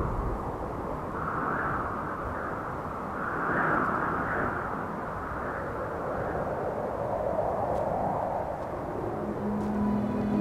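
Outdoor wind ambience: a rushing noise that swells and eases in slow waves. Near the end a low, held music tone comes in.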